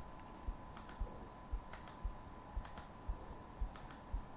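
Faint, regular clicking, about one click a second, with soft low thumps in between and a faint steady tone underneath.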